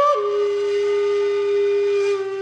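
Background music: a flute-like wind instrument holding long notes. It steps down to a lower note just after the start and holds it steady.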